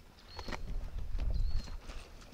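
Persian ibex hooves clattering on rock as the animals cross a rocky slope: a run of sharp knocks and clicks. Wind rumbles on the microphone underneath, and a short high thin note sounds twice.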